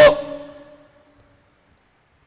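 The end of a man's word spoken into a microphone, its pitch hanging on and fading out over about a second with the room's reverberation, then near silence.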